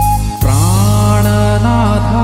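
Yamaha PSR-SX900 arranger keyboard playing sustained chords over a steady bass. After a brief dip about half a second in, a man's voice starts singing a long note that glides in pitch above the chords.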